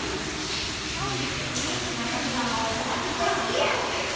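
Low voices talking over a steady background hiss.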